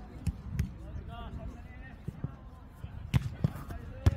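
A jokgu ball being kicked and bouncing during a rally: about six sharp thuds, the loudest near the end. A player's short call comes in between them.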